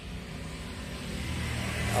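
A motor vehicle's engine running nearby with a low, steady hum that grows gradually louder.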